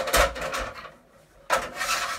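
Aluminium sectioned ladder being slid and handled, its metal sections scraping and rubbing against each other in two bursts: one at the start and another about one and a half seconds in.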